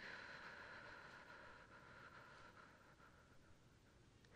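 Near silence: a faint, steady hiss that slowly fades.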